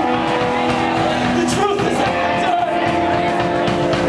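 Live band playing a song on electric guitar, acoustic guitar, upright bass and drum kit, with long held notes and some pitch bends midway.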